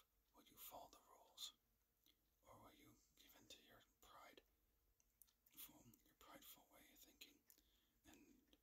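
A man whispering faintly, in short breathy phrases with sharp hissing 's' sounds.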